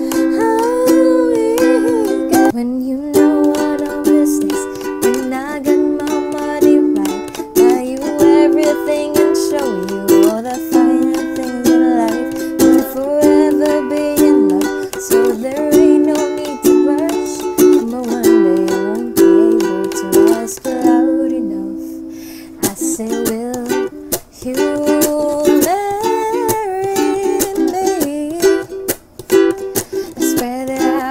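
A woman singing while strumming chords on an IRIN walnut concert ukulele with new nylon strings, freshly tuned. The singing breaks off briefly a little after two-thirds of the way through, then the strumming and singing carry on.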